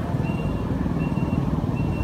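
Steady low rumble of road traffic, with a faint short high-pitched beep repeating at an even pace, a little more often than once a second.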